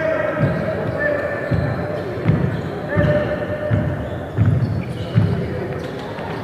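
A basketball being dribbled on a gym floor: a steady run of low thuds about every three-quarters of a second.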